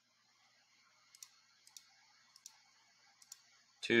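Computer mouse clicking: several faint single and paired clicks over a faint steady hiss.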